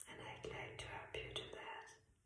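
A woman whispering softly, a few breathy syllables over about two seconds that then stop.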